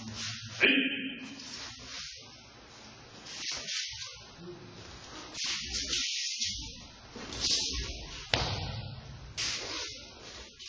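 Cotton martial-arts uniforms (gi and hakama) swishing in repeated bursts as two aikido partners move through a technique on a mat. There is a sharp, loud sound about half a second in and a sharp thump about eight seconds in.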